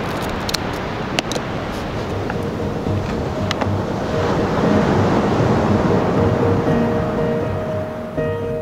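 Surf and wind noise on the microphone, with a few light clicks in the first half. Background music fades in from about halfway.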